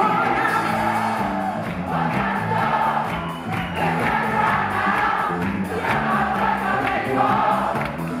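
Live band playing an upbeat song, with a female lead singer and a group of voices singing along.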